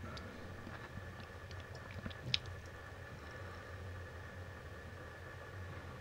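Faint steady background hum with a few soft clicks, the sharpest a little over two seconds in.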